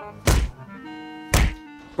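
Two hard thumps about a second apart, blows landing in a pillow fight, over soft sustained background music.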